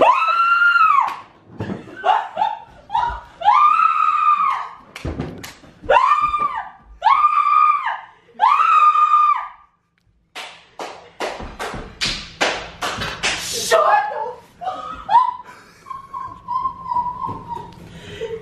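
A woman shrieking with excitement: a string of long, high-pitched screams one after another, then, about halfway through, a quick run of sharp knocks, followed by fainter cries.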